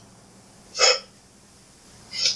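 A single short breathy vocal sound, hiccup-like, about a second in.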